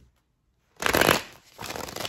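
A deck of tarot cards being riffle-shuffled by hand: a loud riffle of cards about a second in, then a softer rattle of cards near the end.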